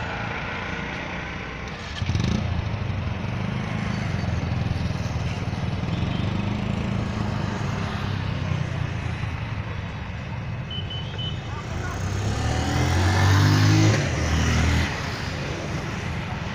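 A steady, low, engine-like rumble with indistinct voices behind it. The rumble grows louder near the end, then drops off suddenly.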